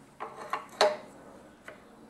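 Metal clicks and clunks as the drill-holding chuck of an SRD drill sharpener is handled and seated in its control block, with the sharpest knock, briefly ringing, a little under a second in. The grinder motor is not running.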